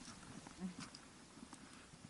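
Faint footsteps on a stony mountain trail, with a few soft clicks of boots on loose stones.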